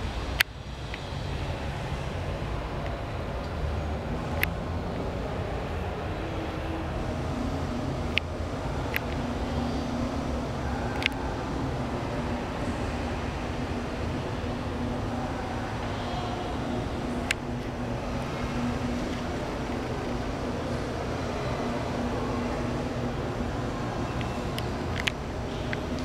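Steady low rumble and hiss of background noise, broken by a handful of sharp clicks. A faint steady hum joins it from about eight seconds in until near the end.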